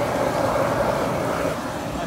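Steady rushing hiss of steam venting from a thermal vent at a hot spring, easing slightly about a second and a half in.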